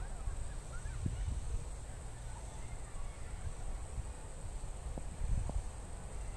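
Outdoor park ambience: wind rumbling on the microphone, with faint distant bird calls early on and a few light knocks about a second in and again near the end.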